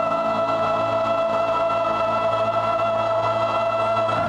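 A large community choir holding one long sung note, the chord unchanging throughout.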